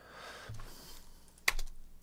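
A single sharp click from a computer keyboard or mouse about one and a half seconds in, over faint soft noise.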